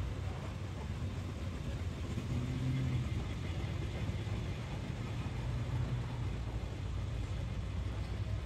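Low, steady engine rumble of a slow-moving vehicle as a flower-covered parade float rolls past.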